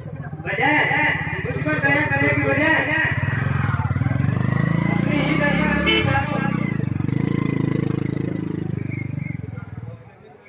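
A performer's voice through a stage loudspeaker, loud, over a steady low buzz. It starts about half a second in and fades near the end, with a single sharp click about six seconds in.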